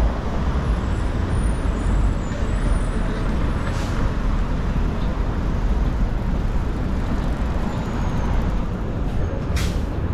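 City street traffic: a steady low rumble of passing vehicles, with two short sharp hisses, about four seconds in and near the end.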